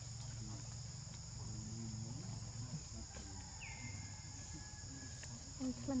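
Insects droning steadily at a high pitch. A thin whistle drops in pitch and then holds for about a second and a half, a little past halfway, and low voices murmur near the end.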